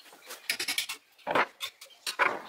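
Parts of a rusty No. 110 block plane clamped in a vise clicking and scraping as it is taken apart by hand: a run of quick clicks, then a louder short rasp a little past the middle.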